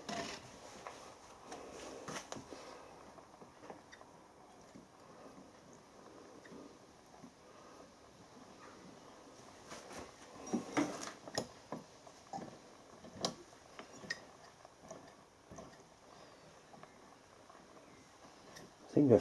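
Quiet room tone with a few scattered light clicks and taps, a small cluster of them about ten seconds in and another a few seconds later.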